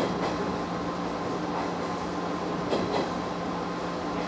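Cab of a JR 115-series electric train pulling slowly away from a station: a steady running hum, with a few clicks from the wheels over the rails near the start and about three seconds in.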